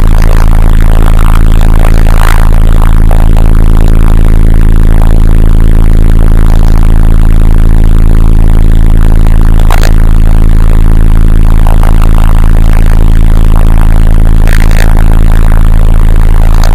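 Loud, steady low drone of heavy machinery running in a tunnel, holding one unchanging pitch, with three short sharp knocks at about two, ten and fifteen seconds.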